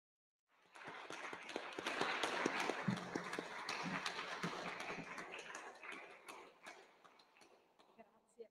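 Applause from a small seated audience and panel, hands clapping in a dense patter. It starts about half a second in and thins out over the last two seconds.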